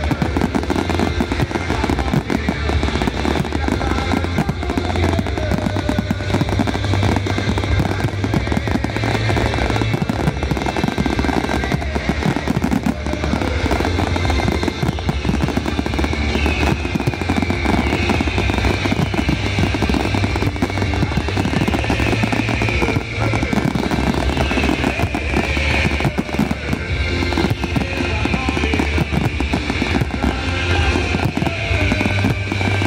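Fireworks display bursting densely, a rapid, continuous stream of bangs and crackles from many shells at once, with music playing along throughout.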